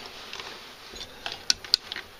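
A few small clicks and taps over a faint steady hiss, with two sharper clicks about a second and a half in.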